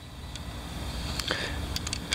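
Steady low background rumble outdoors, with a few faint clicks of handling.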